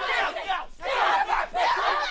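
Several people shouting and yelling over one another in a scuffle, with a short lull a little under a second in.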